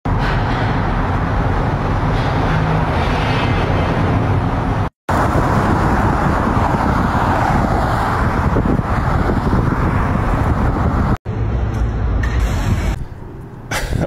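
Steady road traffic noise from cars on a multi-lane road, cut off briefly twice, about five seconds in and again near eleven seconds.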